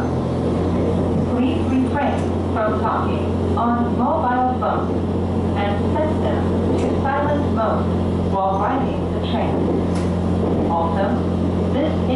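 Steady low hum of a JR Hokkaido H100 DECMO electric-drive diesel railcar, its engine-generator heard inside the passenger cabin, with a voice speaking over it.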